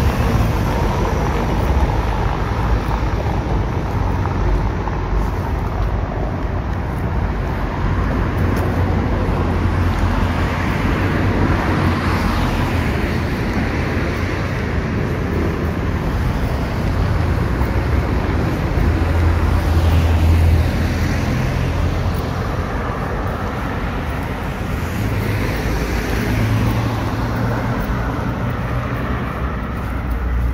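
Road traffic on a town street: cars passing now and then, their noise swelling and fading over a steady low rumble.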